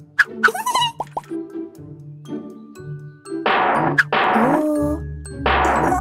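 Children's cartoon soundtrack: light background music with cartoon sound effects. There are short sliding pitched sounds near the start and two louder effect bursts with sweeping tones in the second half.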